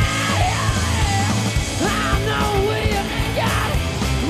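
Live garage rock band playing: a male lead singer sings over electric guitar, bass and drums.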